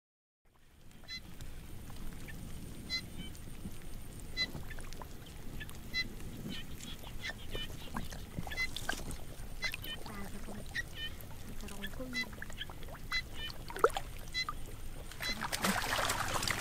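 Short pitched animal calls repeat every second or two over a low outdoor background with small scattered splashes. Louder splashing of water in the shallow paddy starts near the end.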